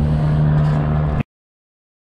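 A vehicle engine idling with a steady low hum. About a second in it cuts off abruptly to dead silence.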